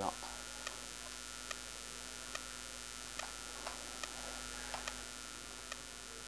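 Steady, quiet electrical hum, with faint small clicks scattered through it, about one a second, as a tripod ring-light stand is handled and its height adjusted.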